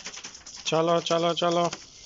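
A man's voice calls "chalo" three times in quick succession, each call drawn out and sing-song, as a herding call to chickens. Faint clicking comes before the calls.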